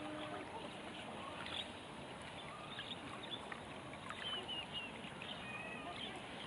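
Steady murmur of river water with scattered faint clicks, and a few short high bird chirps about four to five seconds in.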